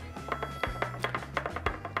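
Background music with a steady low bass line, with light, quick clicks of a stirrer tapping against a glass beaker as a salt solution is stirred.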